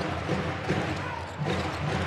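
Basketball arena sound during live play: crowd noise with music playing under it.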